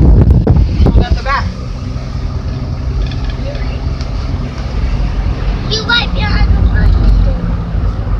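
Car engine running at a steady pitch with road noise, heard from inside the cabin while driving uphill.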